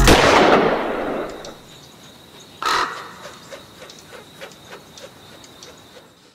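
Logo-intro sound effects: a loud burst of noise at the start that fades over about a second and a half, then a single crow-like caw about three seconds in, trailing off in fading echoes.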